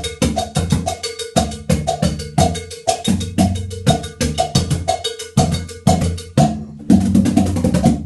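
Three surdo drums played in a 12/8 rhythm, struck with a flexible flix stick, over a repeating cowbell pattern. The strikes break off briefly about six and a half seconds in, then resume.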